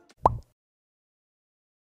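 A single short edited sound effect a quarter-second in, sweeping quickly upward in pitch, followed by dead silence.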